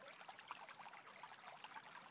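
Faint sound of a shallow stream running over rocks: a steady rush flecked with many small splashes and trickles.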